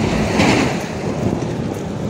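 A heavy truck passing close by on the road: a rush of engine and tyre noise with a low rumble that swells about half a second in and then eases.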